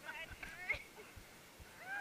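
Short, high-pitched vocal exclamations from people close by, with a few soft thumps.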